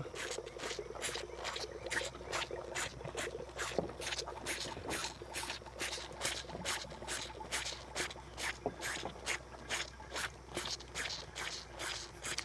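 Cattle feeding close by: a steady run of quick clicks, several a second, from eating and sucking at the feed tub and milk bottle.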